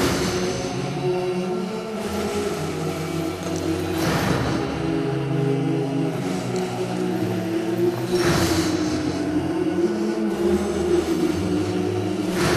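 Background music: dark, sustained low chords with a swell of noise roughly every four seconds.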